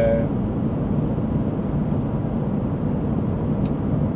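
Steady road and engine noise inside a moving car's cabin. A short, faint click comes about three and a half seconds in.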